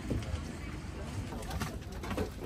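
Airliner cabin background: a steady low rumble with indistinct voices and a few small clicks.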